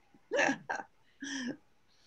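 A person's voice on a video call: a short "yeah" followed by a couple of brief vocal sounds, with silent gaps between them.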